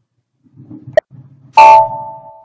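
A single sharp mouse click about halfway through. Near the end comes a loud, short electronic chime from the computer, a steady two-tone ding that rings on for about a second, as the report screen refreshes.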